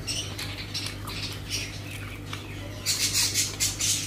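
Close-up wet chewing and lip-smacking of someone eating rice and chicken curry by hand, mixed with fingers squishing the rice on the plate. Short wet clicks run throughout, with a louder run of them about three seconds in.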